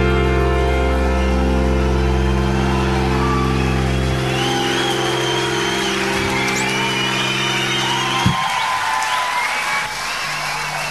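Live rock band's final chord ringing out as one long held chord, cut off sharply about eight seconds in. Over its tail, the concert crowd starts cheering and whistling.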